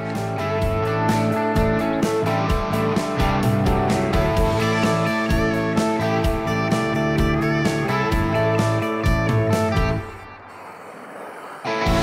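Background music led by guitar with a steady beat; it drops away for a couple of seconds near the end and then comes back in.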